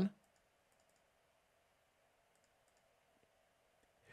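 Faint computer mouse clicks, a few at a time in small clusters, over quiet room tone.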